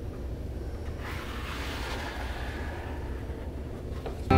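A flexible plastic spreader being dragged across an epoxy-wet wooden butcher block, a soft scraping swish from about a second in until near the end, over a low steady room rumble.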